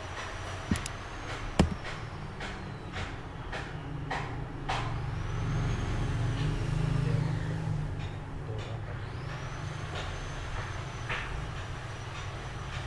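A low, steady rumble that swells about halfway through and then eases, like machinery or traffic in the background, with a few sharp clicks in the first few seconds.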